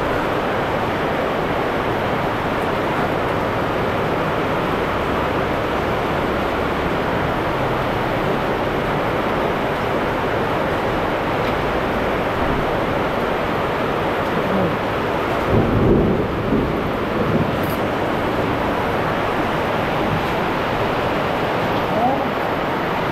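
Heavy rain pouring steadily. About three-quarters of the way through, a louder low rumble lasts for about two seconds.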